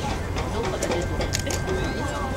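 Outdoor background: a steady low hum with a thin steady high tone, faint distant voices and a few small clicks.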